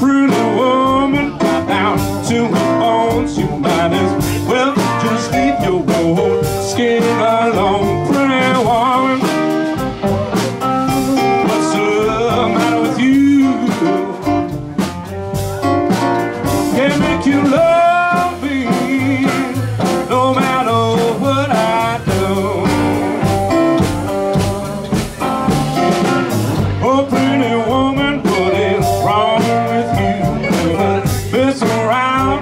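A live blues band playing a mid-tempo song, with electric guitar, electric bass, keyboard and drums, and a singer's voice over the band.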